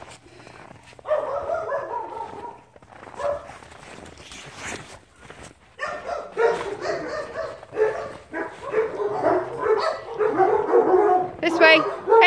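Dogs barking and vocalizing in play, with high yips near the end.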